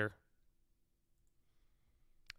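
The last syllable of a man's speech, then near silence with faint room tone for the rest of the time.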